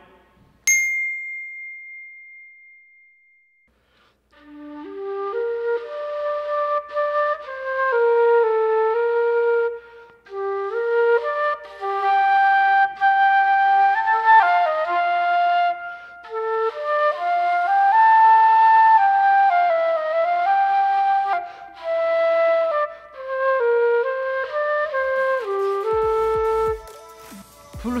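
A single bright chime rings out near the start and dies away. From about four seconds in, a silver concert flute plays a slow solo melody in phrases with short breath pauses.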